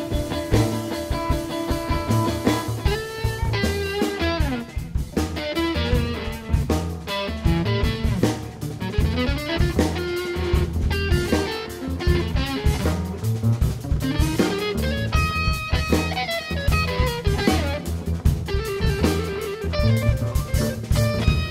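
A jazz-rock band playing: electric guitar runs fast melodic lines with bends over a plucked double bass and a drum kit.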